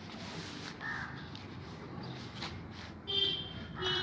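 A short, high-pitched call about three seconds in, over a faint steady outdoor background.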